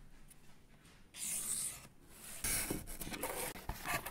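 Felt-tip marker drawn along a ruler across a cardboard sheet: two scratchy strokes of about a second each, with a few light clicks of the ruler and cardboard being handled.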